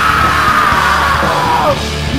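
Live screamo band playing loud, with a vocalist holding one long note on the word "you" that slowly falls in pitch and breaks off near the end.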